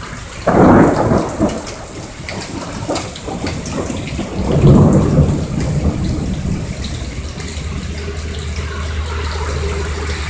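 Thunder in a rainstorm: a sudden loud crack about half a second in and a second, lower rumble around the middle, over steady rain.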